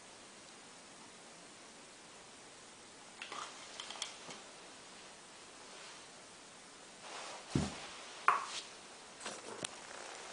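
Light handling sounds of plastic containers and a pill vial in a quiet small room: a few soft rustles and clicks about three to four seconds in, a thump about seven and a half seconds in, then more scuffs and light taps.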